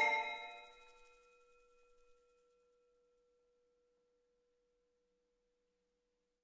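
The last chord of marimba and voices dies away within about a second, leaving one pure, steady tone ringing softly and fading slowly over several seconds.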